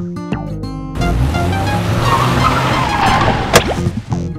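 Children's song music stops about a second in, and a cartoon car sound effect follows: engine and tyre noise, with a sharp click near the end.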